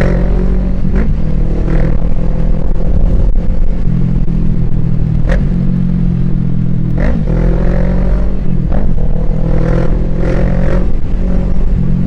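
Motorcycle engine running at a steady pace while riding between lanes of traffic, with a low rush of wind on the microphone.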